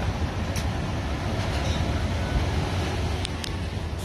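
Steady background hum of a large indoor lounge, mostly low rumble from ventilation and general activity, with a few faint clicks.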